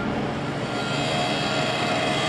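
Steady, loud mechanical noise of heavy machinery running, with a higher steady whine joining about a second in.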